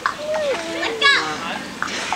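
Young children's voices calling out and chattering excitedly, with a higher-pitched cry about a second in.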